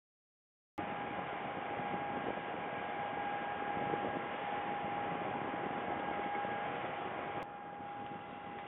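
Steady electronic hiss with a constant thin whine from a webcam's low-bandwidth audio feed. It cuts in abruptly after a moment of dead silence and drops a little near the end.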